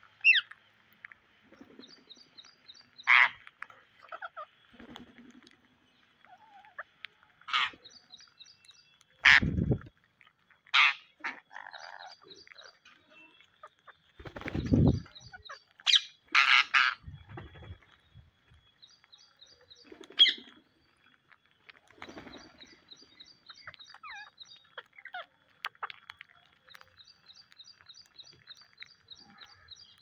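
Rose-ringed parakeets giving sharp, shrill calls every few seconds while feeding close by. Around the middle there are two low bumps and flutters right at the microphone. A faint, repeating high twitter runs in the background.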